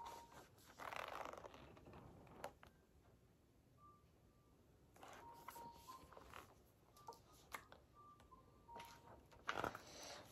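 Near silence, with faint rustling and a few soft clicks from a hardcover picture book being handled and turned around. A few faint, brief, steady tones come in the middle.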